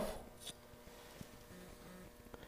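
Quiet room tone with a couple of faint clicks.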